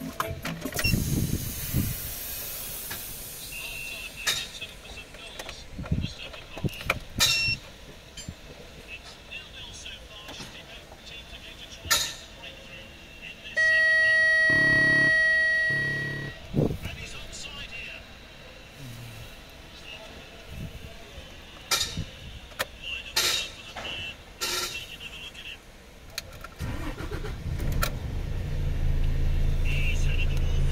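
Iveco Stralis cab: scattered clicks and knocks, then a steady high-pitched dashboard warning buzzer for about three seconds as the ignition comes on and the panel shows the ECM 98 fault. Near the end the truck's diesel engine starts and settles into a steady low idle.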